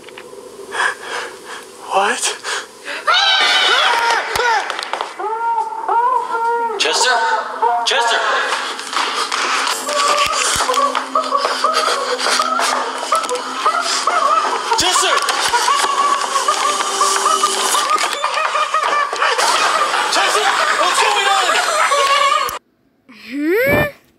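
A man laughing hard, with other voices and background music, from the soundtrack of a video being played.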